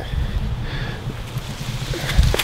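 Wind rumbling on the microphone, a low, uneven buffeting with no other clear sound over it.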